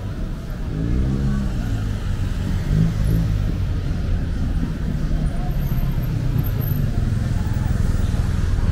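Road traffic: cars driving past close by, a steady low rumble, with one engine note rising and falling about a second in.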